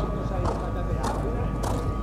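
Horse's hooves cantering on a sand arena, a dull hoofbeat about every 0.6 seconds.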